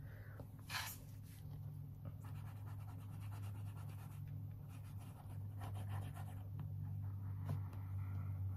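Glue stick rubbed across the back of a cardstock frame: faint dry scraping strokes, with a sharper scrape about a second in, over a steady low hum.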